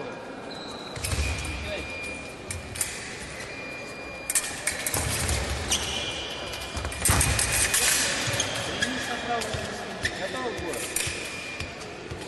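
Fencers' footwork on a sports-hall floor: rubber soles squeaking and feet thudding as they advance and retreat, with louder flurries of steps about five and seven seconds in.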